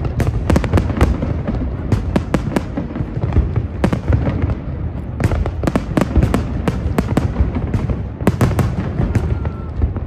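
Fireworks display: aerial shells bursting in clusters of rapid sharp bangs and crackles, over a dense low background rumble.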